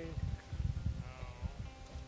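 A dog giving a short, high, wavering whine about a second in, over soft background music and low wind rumble on the microphone.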